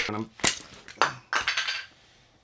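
A few sharp clattering knocks of hard objects being banged about below the desk, spread over about a second and a half, the last a short rattle.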